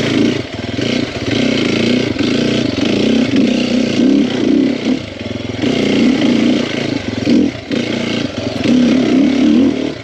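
2021 Sherco 300 SEF Factory Edition's single-cylinder four-stroke engine running on a trail ride, the throttle opening and closing so the engine note swells and drops several times, with short dips where the rider rolls off.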